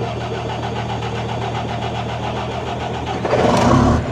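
Diesel truck engine running at idle, with a louder surge about three seconds in.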